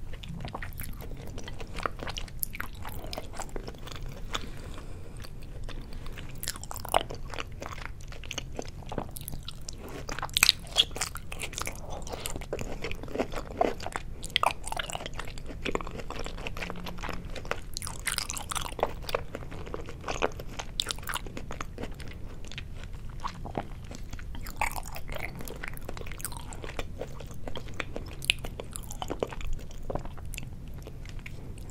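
Close-miked chewing of soy-sauce-marinated raw salmon sashimi: wet mouth sounds and smacks with sharp clicks and crunches scattered throughout. The loudest come about ten to eleven seconds in.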